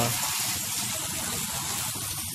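Water spraying in a steady, hissing jet onto glass-fronted solar panels as they are rinsed clean.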